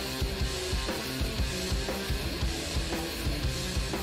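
Instrumental progressive rock recording playing, with drum kit and guitar, the drums hitting in a steady rhythm.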